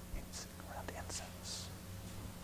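Faint whispering with a few short hissing sounds, over a low steady hum.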